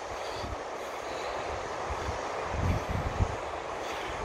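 Steady hiss of wind and ocean surf, with a few low rumbling buffets of wind on the microphone in the second half.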